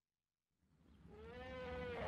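Faint outdoor zoo ambience fading in from silence about half a second in, with one drawn-out animal call that rises and then falls in pitch near the end.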